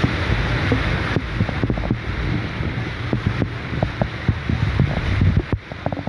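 A vehicle driving through deep floodwater, its tyres throwing up spray and water rushing along the body, with wind buffeting the microphone. The rush is heavy and steady, easing off about five and a half seconds in.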